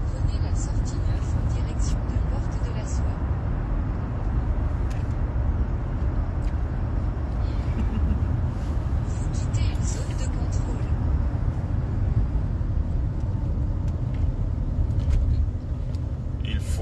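Steady low rumble of road and engine noise inside a moving car's cabin, with faint rustles now and then.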